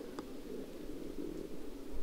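Quiet steady outdoor background noise with faint handling sounds: a small click shortly after the start and a soft knock near the end.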